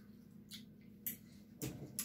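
Faint mouth clicks of children chewing sour gummy candy, a few short sparse ticks over a low steady hum.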